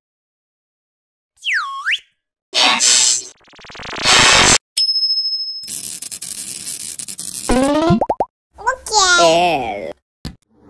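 Quick succession of cartoon sound effects after about a second of silence: a whistle that dips and rises, two rushing whooshes, a click with a short high beep, then a long crackling electric buzz. Near the end come squeaky, sliding cartoon-character vocal sounds.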